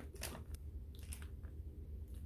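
A few soft clicks and crackles of a wax melt tile being handled and taken from its packaging.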